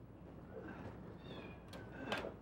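Faint cat meowing: two short high calls, the second falling in pitch, with a light click near the end.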